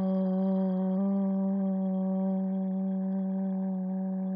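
A loud, steady, low sustained meditation tone with a ladder of overtones above it, in the manner of a singing bowl or drone. It sets in abruptly just before and fades very slowly.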